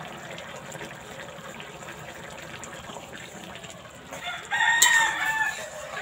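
A rooster crowing once near the end, a single call of about a second and a half, after a few seconds of faint steady background noise.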